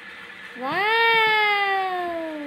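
A toddler's single long, drawn-out vocal cry that starts about half a second in, rises quickly in pitch and then slides slowly down.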